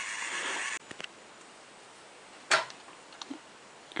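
A 3D pen's small filament-feed motor whirring steadily, cutting off suddenly under a second in. Then a single sharp click about halfway through, with a few faint ticks.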